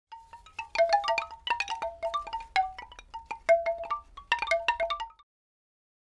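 Chimes ringing in a quick, irregular run of struck metallic notes for about five seconds, then stopping abruptly.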